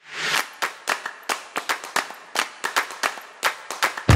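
L'Or Barista capsule espresso machine brewing a shot: a swell of hiss at the start, then a rapid, irregular run of sharp clicks and rattles over a faint hiss.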